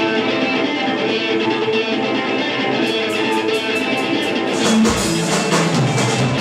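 Live rock band playing the opening of a song: electric guitar sounds out sustained chords and notes. Light cymbal ticks join about three seconds in, and bass comes in near the end.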